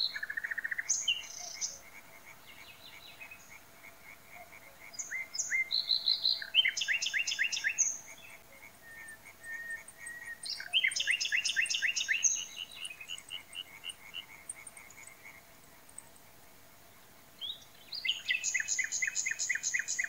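Common nightingale singing loud, varied strophes of rapid repeated notes, trills and fluty whistles, separated by pauses of a few seconds.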